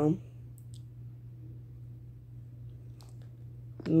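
A few faint taps on a phone's touchscreen keyboard, a couple about half a second in and another about three seconds in, over a steady low hum.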